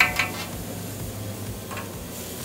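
Metal spatula scraping and clicking on a steel flat-top griddle as cooked mushrooms are scooped up: a few sharp scrapes at the start, then quieter, with a steady low background hiss and hum.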